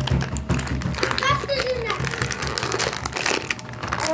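Clear plastic packaging crinkling as hands pull a small toy out of its bag, over background music.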